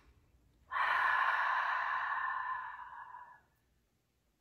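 A woman's long audible breath out through the mouth, like a slow sigh, lasting about three seconds. It starts about a second in and fades away.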